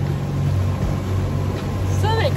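Sailboat's engine running steadily under way while motor-sailing, a constant low hum with wind and water noise over it.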